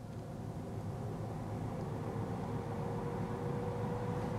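Rabbit Air A3 air purifier fan running and speeding up as its auto mode senses cigar smoke in the air: a steady rush of air that grows a little louder, with a faint hum coming in about halfway through and holding.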